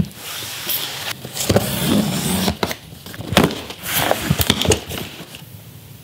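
Taped cardboard shipping box being cut and opened: tape slit with a knife, cardboard flaps scraping and packing paper rustling, with several sharp knocks.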